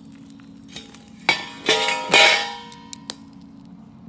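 A hot steel gold pan clanging as it is handled with metal tongs over a fire: three metal hits about a second in, each leaving a ringing tone that fades within a second or so.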